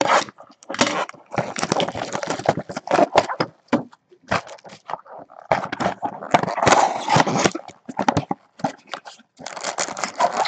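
A 2018 Premier Draft football card box being handled and opened by hand: dense, irregular crinkling, scraping and rustling of cardboard and wrapping.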